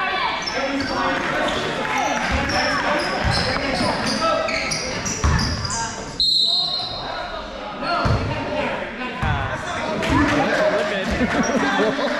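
A basketball bouncing on a gym floor in play, with short high squeaks and many voices from players and crowd in a large echoing hall.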